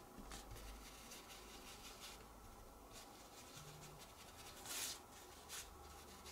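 Faint rubbing of a stencil brush dabbing and swirling ink onto cardstock around the card's edges, with one brief louder swish near the end.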